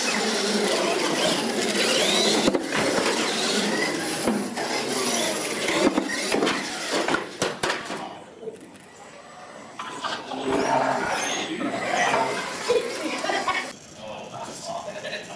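Radio-controlled monster trucks racing across a smooth tiled floor: motors whining and tyres squealing, with clicks and knocks, quieter for a couple of seconds past the middle.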